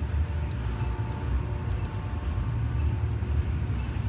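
Low, steady rumble of city street traffic. From about a second in, the faint hum of a vehicle engine runs over it.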